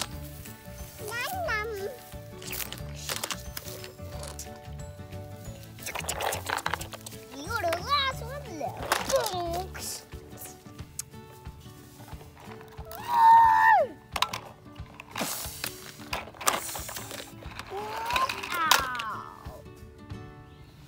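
A young boy making wordless, swooping play noises with his voice over steady background music; the loudest is a high call about 13 seconds in.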